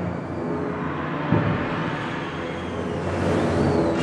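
High-school wind band playing: a low percussion roll under held chords, with a heavy drum stroke about a second in, swelling toward a loud brass entry.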